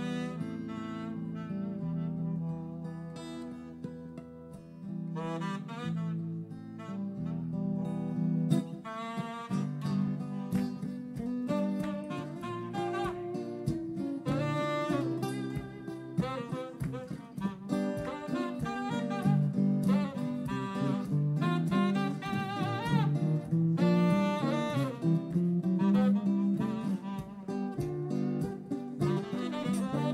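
A saxophone and a guitar playing jazz together live: held guitar chords under the saxophone, with the playing growing busier from about eight seconds in.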